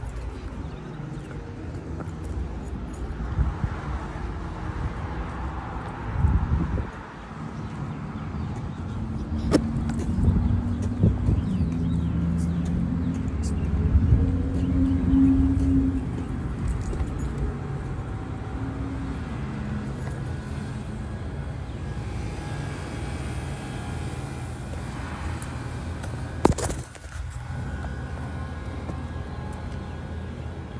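Outdoor road traffic with a motor vehicle's engine running close by, swelling louder through the middle and fading again. Two sharp knocks, one about a third of the way in and one near the end.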